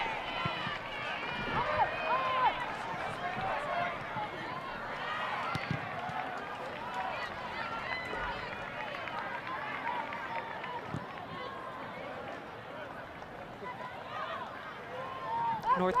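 Stadium ambience at a soccer match: a steady murmur of many voices from the crowd, with scattered shouts and calls from players and spectators, and a few faint knocks.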